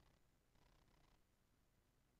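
Near silence: faint background hiss with a slight low rumble.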